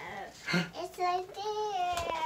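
A small child's high-pitched, wordless sing-song vocalizing, an excited little voice starting about half a second in and then holding long, gently sliding notes.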